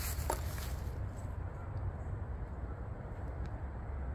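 Outdoor ambience: a low, steady rumble with a few faint ticks.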